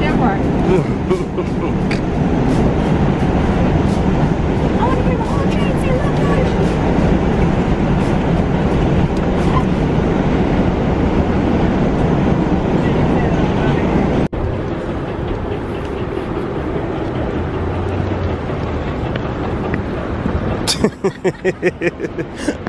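New York City subway car running, a loud steady rumble and rattle heard from inside the car. About fourteen seconds in it cuts abruptly to quieter, steady street noise, with a rapid run of loud pulses near the end.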